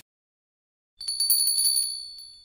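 A small bell ringing as a notification sound effect: a rapid trill of high, bright strikes that starts about halfway through and fades away. Silence before it.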